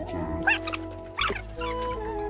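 Background music with steady held notes, with two short high-pitched cries cutting in, one about half a second in and one just past a second.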